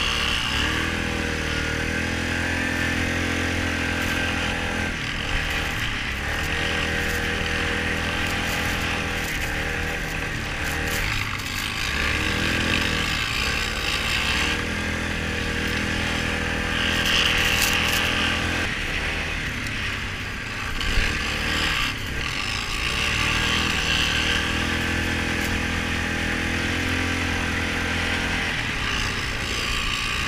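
ATV (quad bike) engine running under way, its note rising and falling as the throttle is opened and eased off, with several brief lifts off the throttle.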